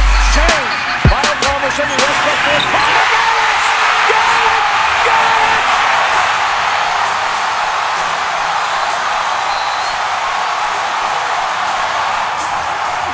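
Basketball sneakers squeaking and a ball bouncing on the hardwood court in the first two seconds. Then a loud arena crowd cheers steadily after a game-winning three-pointer.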